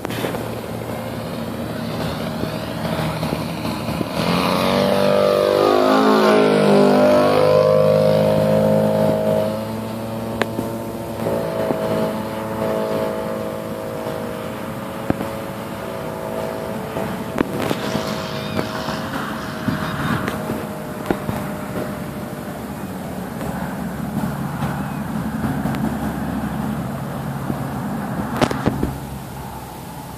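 Radio-controlled model airplane's engine buzzing in flight. It grows louder and its pitch sweeps down as the plane passes close overhead, about four to nine seconds in, then it carries on steadily at a distance.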